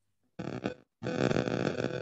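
A person's voice in short, unclear bursts: a brief one about half a second in, then a longer stretch from about a second in.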